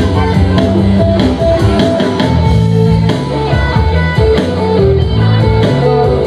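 Live band playing an instrumental passage, with guitar to the fore over bass and drums.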